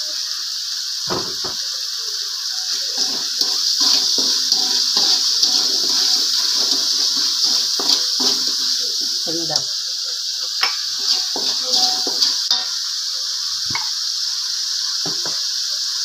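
Ground chili, shallot and garlic paste sizzling steadily in hot oil in an aluminium wok, with a metal slotted spatula now and then scraping and tapping against the pan as the paste is stirred. The spice paste is being sautéed until fragrant.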